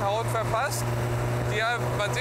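A 1937 BMW 328 racing roadster's straight-six engine running at a steady cruise, a constant low hum heard from the open cockpit, with men's voices talking quietly over it.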